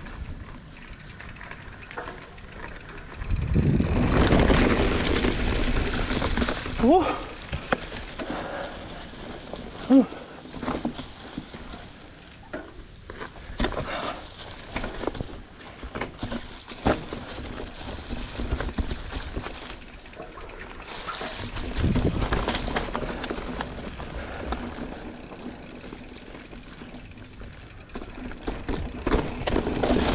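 Giant Trance 29 full-suspension mountain bike riding down a rocky trail covered in dry leaves: tyres crunching through the leaves and over rocks, with many short knocks and rattles from the bike over bumps. Two louder rushes of wind noise on the microphone come about four seconds in and again past twenty seconds.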